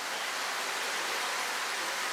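Steady, even hiss of background noise.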